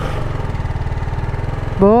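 Sport motorcycle's engine running steadily as it is ridden, an even low drone with rapid firing pulses. A man's voice cuts in near the end.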